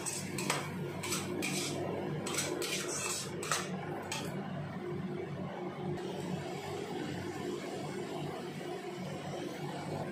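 Steel spatula scraping and clinking against a kadai while stirring a thick masala paste, with strokes coming quickly for about the first four seconds. After that the stirring stops and a steady low sizzle of the masala frying in oil carries on.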